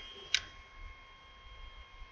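Quiet pause with a single short, faint click about a third of a second in, over a faint steady high-pitched whine.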